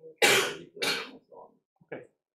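A person coughing: two loud coughs about half a second apart, then two fainter, shorter ones.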